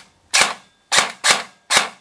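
Bolt BR4 Elite Force airsoft electric rifle with the Bolt Recoil Shock System firing single shots: four sharp cracks at uneven intervals of about half a second, each the gearbox cycling with the recoil weight kicking.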